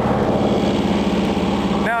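John Deere 650 compact diesel tractor running steadily while pulling a bush hog rotary cutter through overgrown field, the engine at an even, unchanging pitch.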